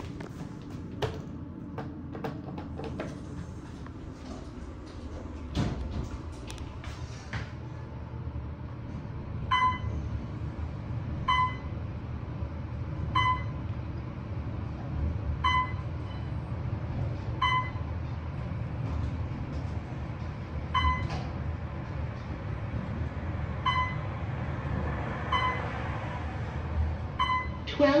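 Otis traction elevator car setting off and riding up: a few clicks and a door sound in the first seconds, then a steady low hum of travel. Over it a short, high electronic beep repeats about every two seconds as the car passes floors.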